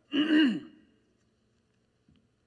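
A man clearing his throat once, briefly.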